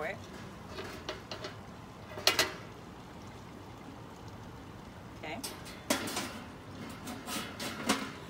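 Metal knocks and clanks from handling a Cobb grill's metal parts, the sharpest about two seconds in. Near six seconds the domed metal lid is set down onto the grill with a clank.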